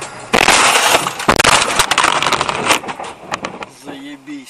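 A car colliding at about 55 km/h with the back of a braking car just ahead, picked up by the dashcam inside. A sudden loud impact comes about a third of a second in, followed by a dense clatter of crunching and sharp knocks for about two and a half seconds that fades near the end.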